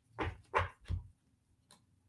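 Tarot cards being handled on a desk: three soft knocks in quick succession within the first second, as the deck is tapped and set down.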